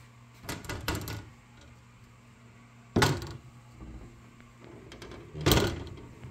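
Glass-fronted wooden bookcase door being handled and shut: some rustling about half a second in, then a sharp knock about three seconds in and a second knock near the end.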